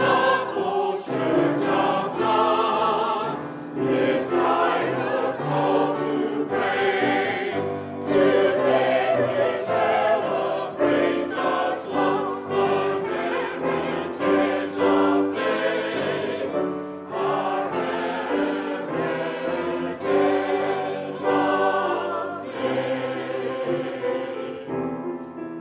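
Mixed choir of men and women singing an anthem together, accompanied by grand piano.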